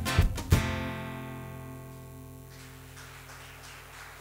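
Live band's closing chord: a last few strums on acoustic guitar with the band, ending on one accented hit about half a second in, after which the chord rings on and fades out over about two seconds.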